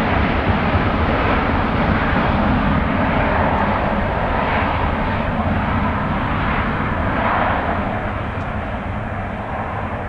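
Airbus A350-1000's Rolls-Royce Trent XWB-97 turbofans run up to takeoff thrust as the jet turns onto the runway and begins its takeoff roll. The sound is loud and steady, then fades from about eight seconds in as the aircraft moves away.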